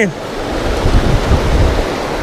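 Fast river water rushing over rocks, a steady loud hiss, with wind buffeting the microphone as a low rumble for about a second in the middle.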